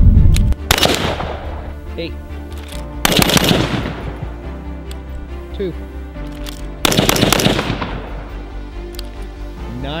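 BCM AR-15 carbine firing three quick strings of shots, about a second in, about three seconds in and again near seven seconds, each with a short echoing tail.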